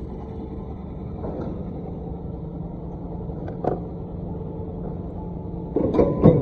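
Cold-forging press and other factory machinery running with a steady low hum. A single sharp knock comes a little past the middle, and a louder clatter starts just at the end.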